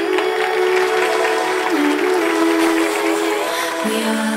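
Studio audience applauding while outro music starts, the music a few long held notes that bend briefly near the middle.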